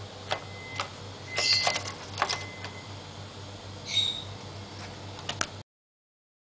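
Peach-faced lovebird working at paper in its tray: a scatter of sharp clicks and scratchy rustles, with one short high chirp about four seconds in. The sound cuts off suddenly near the end.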